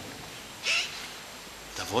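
A pause in a man's sermon: low room tone with a short breath about a third of the way in, and his speech starting again near the end.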